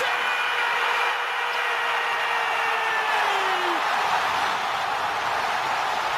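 Stadium crowd roaring steadily at a goal. Over the roar, one long held tone lasts about four seconds and drops away at its end.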